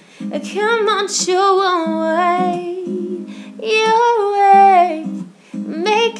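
A woman singing held, sliding notes in four phrases, without clear words, over a steady instrumental backing track with a guitar-like accompaniment.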